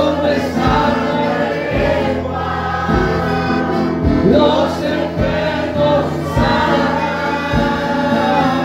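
Congregation singing a worship hymn together with amplified instruments, over a steady low beat about once a second.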